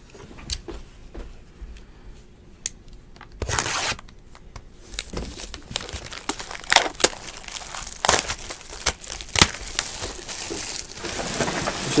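Plastic shrink wrap being torn and crinkled off a sealed box of trading cards, in irregular bursts of crackling and rustling, the loudest about three and a half seconds in.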